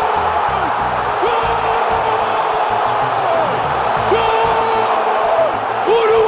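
A football commentator's drawn-out 'goool' cries, each held on one high pitch for about two seconds and repeated about four times, over steady crowd noise and music with a low beat underneath.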